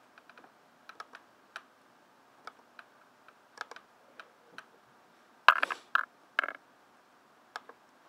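Scattered clicks and key taps from computer input while setting a graphing calculator emulator's window values. About five and a half seconds in comes a louder cluster of three or four sharp knocks.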